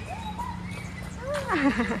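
Two high, voice-like calls that slide in pitch: a short rising-and-falling one near the start, then a longer wavering call that falls steeply in pitch near the end.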